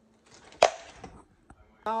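A single sharp crack about half a second in, with faint rustling around it and a small click about a second later.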